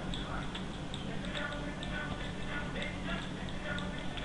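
Faint, irregularly spaced clicks of a computer mouse over low, steady room hum.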